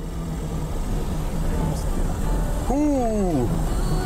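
A Lada 2105's four-cylinder engine and exhaust run steadily as the car drives. About three seconds in, a short voice rises and falls over the engine.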